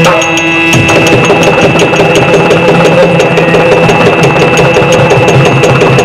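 Yakshagana drums (chande and maddale) playing fast, even strokes over a steady drone, accompanying a dance passage without singing.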